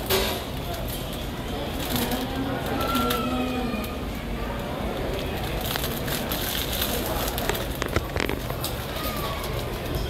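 Airport terminal ambience: a steady hum of background noise with faint, indistinct voices in the hall.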